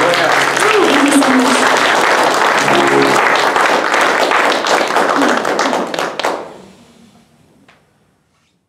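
Small audience applauding as the last acoustic guitar chord dies away, with a few brief voices among the claps; the applause thins and fades out between about six and seven seconds in.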